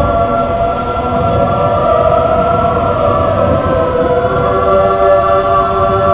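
Background music of sustained, choir-like chords that shift a few times, over a low rumble.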